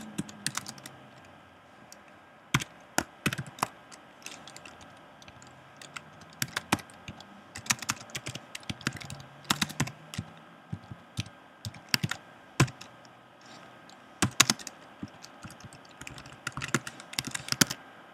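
Typing on a computer keyboard: sharp keystrokes in short, irregular bursts with pauses between them.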